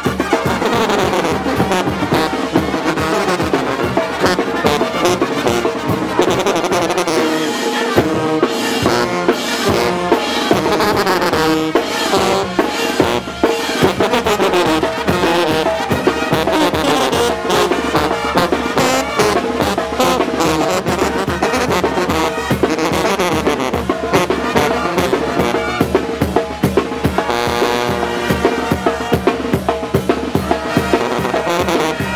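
Oaxacan street brass band (banda de viento) playing live: sousaphones, horns and other brass carrying the tune over a bass drum and cymbal that keep a steady beat.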